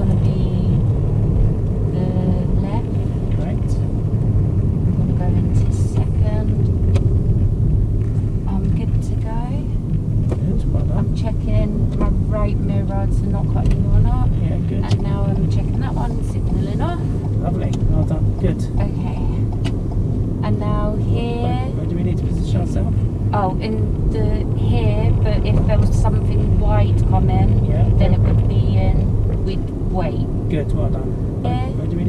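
Steady low road and engine rumble inside the cabin of a moving car, with voices talking on and off over it.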